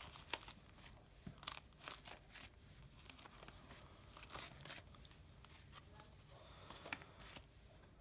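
Faint, intermittent rustling and light clicks of old paper envelopes and plastic sleeves being handled and shuffled through in a stack.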